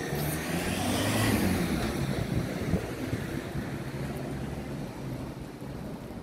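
A motor vehicle passing on the street, its low engine hum and tyre noise swelling about a second in and then slowly fading.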